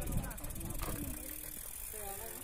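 Faint, overlapping talk from a group of mountain bikers, with light clatter from the bikes as they lift and carry them.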